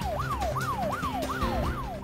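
Breaking-news siren sound effect: an electronic siren in quick falling sweeps, each dropping in pitch and snapping back up, about two or three a second, over a low steady music tone.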